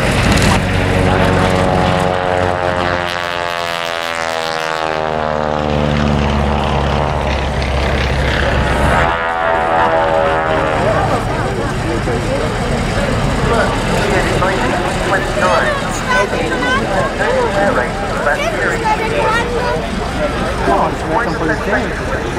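Vintage radial-engined propeller aircraft making display passes, their engine drone swelling and fading, with a sweeping phasing in pitch as a pass goes by in the first half.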